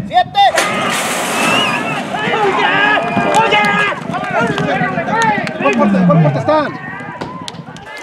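A metal horse-racing starting gate bangs open about half a second in, followed by loud, wordless shouting and yelling from people as the horses break and race.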